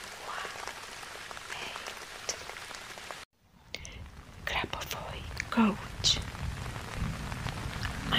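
Steady rain ambience that cuts out abruptly for about half a second just after three seconds in, then comes back fuller and deeper.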